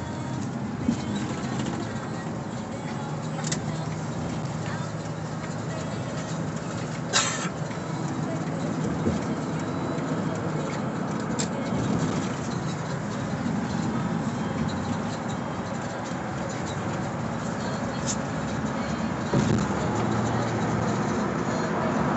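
Steady road and engine noise heard inside a moving car, with a few short clicks or knocks, the loudest about seven seconds in.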